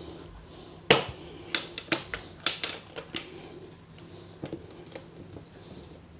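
Metal latches on an aluminium-edged flight case being flipped open: one sharp click about a second in, then a quick run of smaller clicks and clacks over the next two seconds, with a few faint knocks later.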